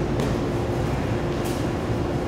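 A steady low background hum with one constant faint tone, and two faint rustles of bodies shifting on the grappling mat.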